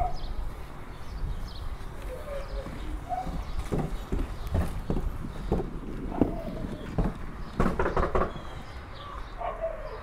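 Footsteps on a wooden porch and its steps: scattered thuds, ending in three quick ones close together about eight seconds in. Faint voices in the background.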